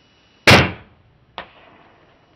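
A bow shot at a deer: one loud, sharp crack of the string's release and the arrow striking, fading over about half a second. Just under a second later comes a second, shorter crack.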